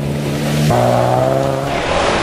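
Rally jeep's engine running hard at steady revs on a snow track, stepping down to a lower pitch about two-thirds of a second in, over a rushing noise from the tyres and snow.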